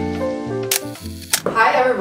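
Light background music with a steady bass line ends about a second in. Two sharp camera-shutter clicks come about half a second apart, and a woman's voice begins right after.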